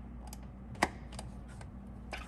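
Light plastic clicks and taps from a PCV hose quick-connect fitting being handled and pushed onto its port, with one sharper click a little under a second in.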